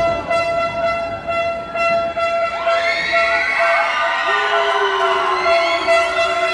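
Arena crowd shouting and calling out over a steady, horn-like tone that holds unchanged throughout. The voices build up from about halfway in, and one long call is held near the end.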